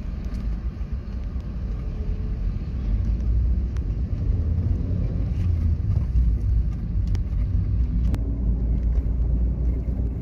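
Moving car heard from inside: a steady low rumble of engine and tyres on the road, with a few faint clicks and one sharper click about eight seconds in.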